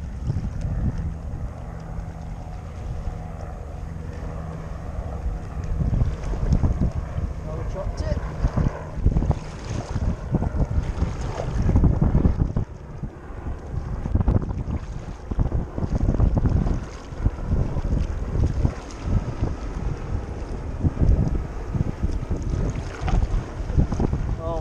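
Wind buffeting the microphone of a camera on a sea kayak in uneven gusts, over the splash and lap of water from paddle strokes.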